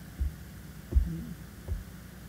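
Three low, dull thumps picked up by a podium microphone, the loudest about a second in, over a steady low hum, with a brief faint voice sound just after the loudest thump.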